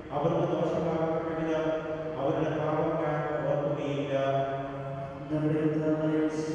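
A man's voice chanting a liturgical prayer in long, held notes, with fresh phrases beginning about two seconds in and again near the end.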